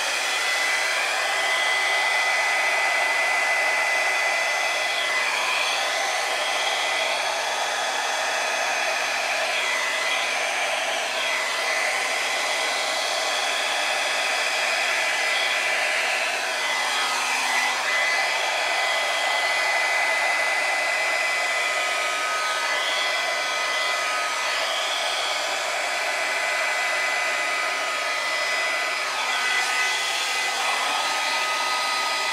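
Drew Barrymore flower hair dryer running steadily on low, a continuous rush of air with a steady whine. Its tone swoops every few seconds as it is swept back and forth over the canvas.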